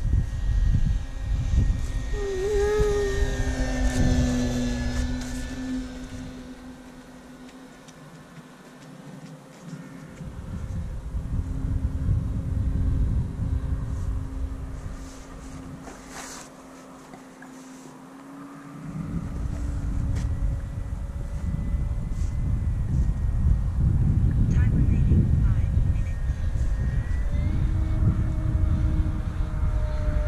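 Electric RC plane's brushless motor and propeller humming in the air, its pitch drifting up and down as it flies and the throttle changes. Low wind rumble on the microphone over it, easing off twice.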